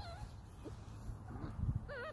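Puppy whining on a leash as it balks at being led: a short wavering whine at the start and another near the end, with a low rustle shortly before the second one.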